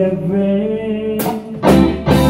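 Live rock band playing a slow song: electric guitars, including a Rickenbacker, with bass guitar and drum kit. A chord is held, then a loud strummed chord with a drum hit comes near the end.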